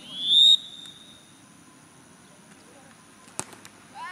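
A referee's whistle blows one short blast that rises slightly in pitch, signalling the corner kick. About three and a half seconds in, the football is kicked with a single sharp smack.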